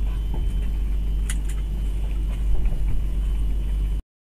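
Steady low road and engine rumble heard from inside a truck's cab, with a sharp click about a second in and a lighter one just after.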